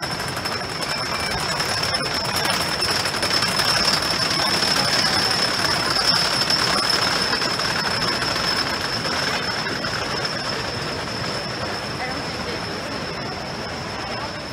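Hades 360 roller coaster train running along the wooden track overhead: a rumble that builds to its loudest around the middle and then slowly fades as the train moves on. A steady high whine sounds throughout.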